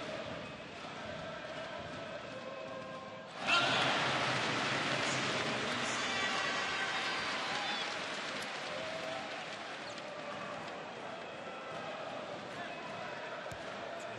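Basketball arena crowd murmuring, then breaking into cheers and applause about three and a half seconds in as the home team scores a free throw. The cheer holds for a few seconds and slowly dies down.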